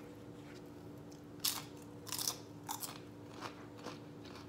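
A person biting and chewing crisp fried tortilla close to the microphone, with loud crunches about a second and a half in, again just after two seconds, and a few more near three seconds.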